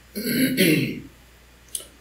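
A man clearing his throat once, a rough voiced rasp lasting under a second, followed by a single faint click near the end.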